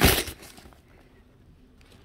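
A single short, loud crunching thump right at the start, a hammer blow on a paper-and-cardboard mock laptop, then quiet apart from a few faint clicks near the end.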